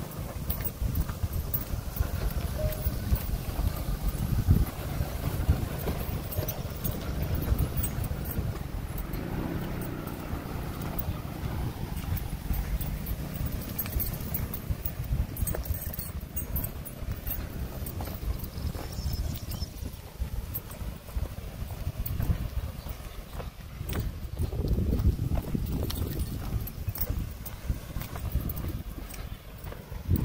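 Nissan March hatchback's engine running low as the car pushes slowly through tall grass, under heavy wind rumble and scattered crackling.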